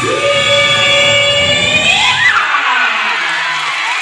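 Show music over the PA: one long held vocal note that swoops upward at its end as the backing drops out about two and a half seconds in, followed by the crowd cheering and children shouting.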